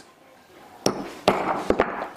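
Hammer striking a small steel hole punch to punch brogue holes through leather on a wooden bench: a few sharp taps, starting a little under a second in.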